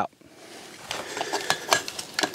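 Light metallic clicks and clinks of a 6.5 Creedmoor rifle being handled around its magazine on a shooting bench, starting about a second in.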